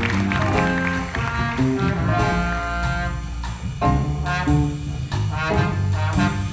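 Student jazz big band playing, with saxophones, trumpets and trombones in sustained chords over drums and the rhythm section.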